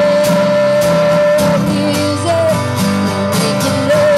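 Live pop-rock song: a woman's lead vocal holds a long note, then moves on, over strummed acoustic guitar and band accompaniment.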